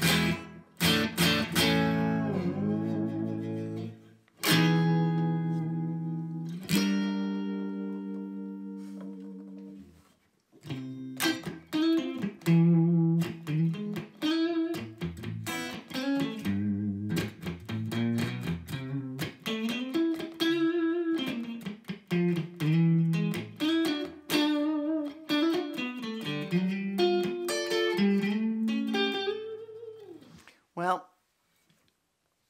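Harley Benton ST20 HSS electric guitar being played. Chords are struck first, with the pitch dipping and coming back about two seconds in. A chord is then left ringing and fading from about four to ten seconds. After that comes a run of quick riffs and short notes that stops near the end.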